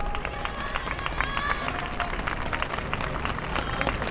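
Audience clapping unevenly after a dance performance, mixed with distant shouting voices from the performers.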